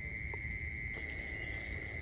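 Insects chirring in one steady high-pitched note, with a low rumble underneath.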